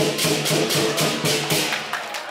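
Lion dance percussion: drum and cymbals played in a fast, steady rhythm of several strikes a second, with the cymbals' bright crashes ringing over the drum.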